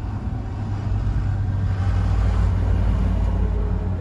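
Steady low rumble of road and engine noise inside the cabin of a Hyundai Accent 1.5L driving in traffic. It grows a little louder around the middle.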